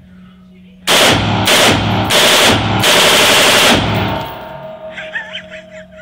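Heckler & Koch G36 assault rifle firing 5.56 mm rounds on full auto: several short bursts of rapid shots back to back over about three seconds. The shots echo off the walls of the indoor range.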